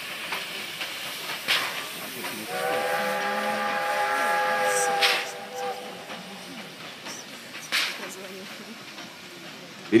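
Steam whistle of a series Э steam locomotive sounding one chord of several tones for about three seconds, starting a couple of seconds in, over a steady hiss of steam. A few sharp puffs of steam come at intervals.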